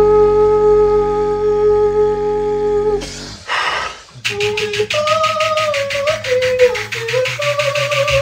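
Two beatboxers performing with their voices. For about three seconds a pure, flute-like note is held steady over a low vocal drone. A short breathy burst comes about three and a half seconds in, and after a brief break a fast clicking hi-hat rhythm starts, with a stepping melody and a bass line in melodic drum-and-bass style.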